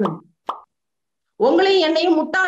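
A woman speaking in Tamil trails off, a short pop sounds about half a second in, then there is a pause of dead silence before she speaks again.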